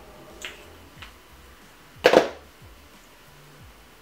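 Makeup items being handled on a desk as concealer is swapped for a sponge: two light clicks, then one sharp, much louder knock about two seconds in.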